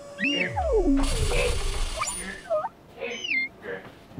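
Squeaky, whistle-like sound effects that glide up and down in pitch. A low rumbling whoosh runs from about a second in to just past two seconds, with a cough in the middle.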